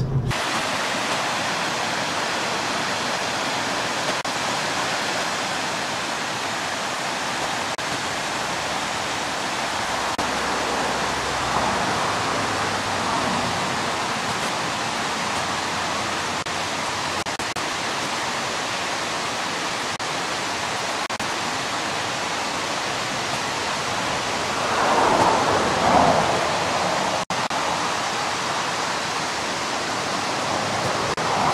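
Steady rush of fast-flowing stream water, swelling briefly near the end and cut by a momentary dropout.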